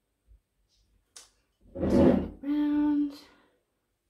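A woman's short laugh about halfway through: a breathy burst of breath, then a held, even-pitched hum.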